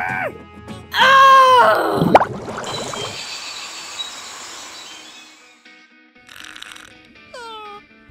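Cartoon soundtrack effects: a loud, strained voice sound about a second in, then a hiss that slowly fades away, and near the end a few short whistles falling in pitch.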